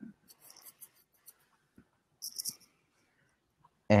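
Mostly quiet room tone broken by faint, short scratching and rustling sounds in two small clusters, one in the first second and another a little after two seconds in, with a few tiny clicks between.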